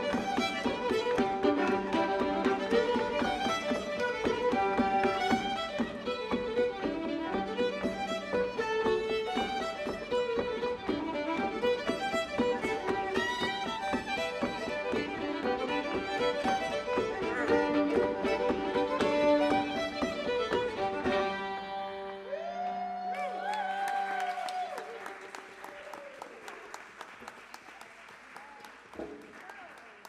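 Fiddle-led Irish traditional dance tune played live, ending about three-quarters of the way through; applause with a few voices follows and fades.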